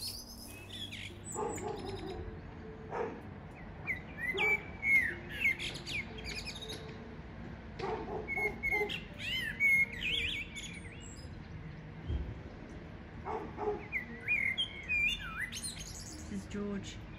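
Male common blackbird singing: three phrases of fluty, warbling whistles with higher squeaky notes, a few seconds apart.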